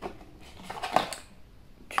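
Cardboard box and paper packing being handled: a few short rustles and light taps, the clearest about a second in.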